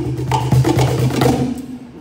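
Hand-played cajon (wooden box drum) percussion: sharp slaps over a steady low bass, dying away about one and a half seconds in as the beat ends.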